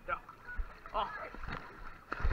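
Pool water sloshing and splashing right at a waterproof action camera held at the surface, with a couple of soft knocks, under short shouted words.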